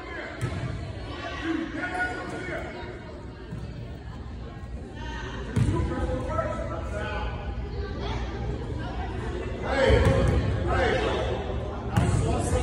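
Voices talking in a gymnasium's echo, with a few thuds of a basketball bouncing on the hardwood court, the loudest near the end.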